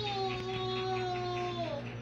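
A young child's voice holding one long drawn-out note, sinking slightly in pitch and falling away after about a second and a half.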